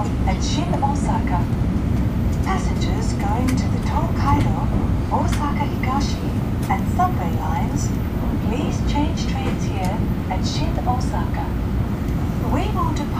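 Cabin noise of an N700-series Tokaido Shinkansen running at speed: a steady low rumble, with indistinct passenger voices talking over it.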